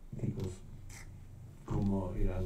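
A man speaking, in a short burst at the start and again from near the end, with a quieter stretch of low background noise between.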